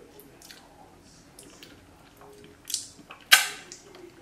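Tasting a blended fruit smoothie from the blender jug with a spoon: faint small mouth and spoon sounds, then two short noisy sounds near the end. The second is a sudden sharp sound about three seconds in and is the loudest.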